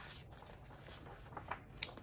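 Faint rustling of magazine pages being handled, with a few light clicks, the sharpest near the end.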